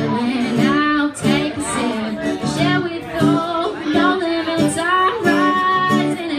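A woman singing a song live, accompanied by her own strummed acoustic guitar, with a long wavering held note near the end.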